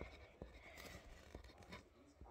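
Faint writing on paper: a few light scratches and ticks over near silence.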